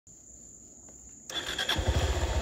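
A steady high-pitched insect drone, then about a second in a dirt bike's engine comes in with a sudden rush of noise, and near the end its rapid low firing pulses set in.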